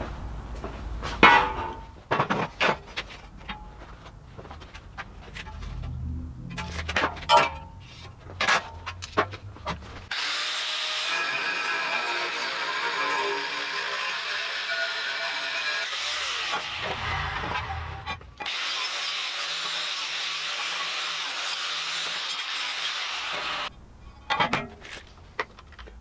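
Clanks and knocks of a steel bar being handled and clamped in a vise, then an angle grinder cutting through 100 × 6 mm flat steel bar in two long steady stretches that start and stop abruptly.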